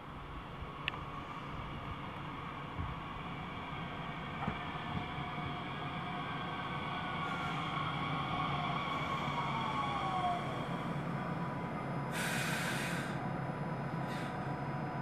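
A Talent 2 (class 442) electric multiple unit pulling in and braking to a stop, its drive whine falling in pitch as it slows. A short burst of air hiss comes near the end.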